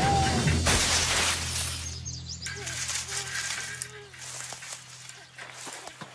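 Cartoon sound effect of a bicycle crashing into a bush: a loud rustling crash about a second in, over background music.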